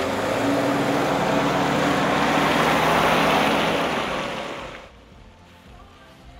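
A loud, steady rushing noise with a low hum in it, starting suddenly and fading out after about five seconds; faint music follows.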